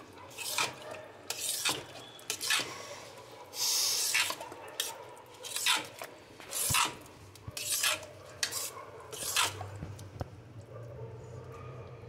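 Metal ladle stirring and scraping thick, cooked khichdi in a pressure cooker pot, about a dozen scraping strokes against the pot. The strokes die away near the end.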